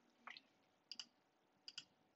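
Faint clicks of a computer mouse: a soft click about a quarter second in, then two quick double clicks about a second and near the end.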